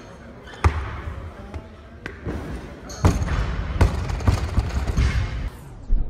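Rubber bumper-plated barbells dropped onto wooden lifting platforms: a heavy thud about half a second in, then a louder drop about three seconds in that bounces a few more times at quickening intervals.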